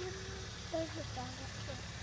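Car engine idling, a steady low hum, with faint voices about a second in.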